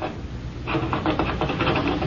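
Radio-drama sound effect of a cat's low, rapid rhythmic rumble, setting in about two-thirds of a second in and going on steadily.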